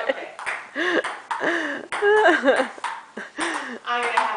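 Celluloid-style table tennis ball clicking off paddles and the table during play, several sharp ticks spaced irregularly about a second apart, with a voice laughing over them.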